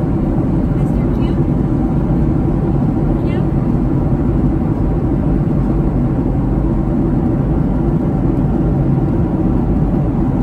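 Steady cabin noise of a Boeing 757-300 in flight, heard at a window seat: an unbroken drone of airflow and engines, heaviest in the low end.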